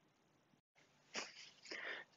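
Mostly near silence, then two short, faint breaths near the end.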